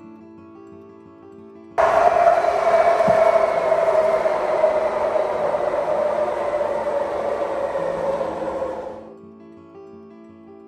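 Passenger train passing on an elevated viaduct: a sudden loud rush of wheel and rail noise with a steady tone that slowly falls in pitch, starting about two seconds in and cutting off abruptly near nine seconds. Soft acoustic guitar music plays underneath.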